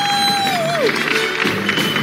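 A person's long "woo" whoop: one cry that rises, holds steady and falls away about a second in, over loud background music.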